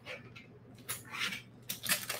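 A few faint rustles and light clicks of small metal charms and findings being handled and picked through.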